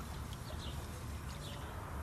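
Quiet outdoor background: a steady low rumble with a few faint, brief high chirps.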